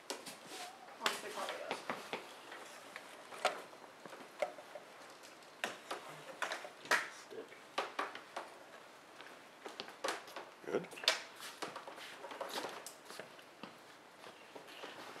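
Scattered clicks, knocks and rattles of film lighting gear being handled and adjusted (light stands, a black flag on its stand), with low, indistinct voices in the background.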